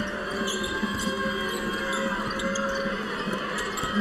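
Arena sound of live basketball play: crowd noise with a ball dribbling and short sneaker squeaks on the hardwood court, over steady held tones of music.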